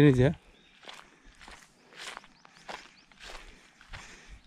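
Footsteps on a dirt path through dry grass and dead leaves, a steady walking pace of a little under two steps a second.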